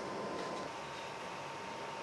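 Steady low hiss of a running desktop PC's cooling fans and room tone, with a faint steady tone.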